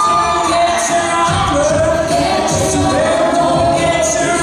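A co-ed a cappella group singing a pop song live into microphones: a lead voice holding long notes over stacked backing voices, with a steady beat made by voice.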